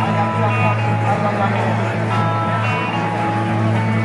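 Live rock and roll band music over a PA amid crowd chatter, with a steady low hum underneath.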